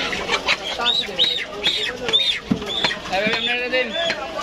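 Heavy cleaver chopping raw chicken on a wooden stump block, a run of sharp knocks. Short high chirps of birds repeat about five times in the middle, over voices in the background.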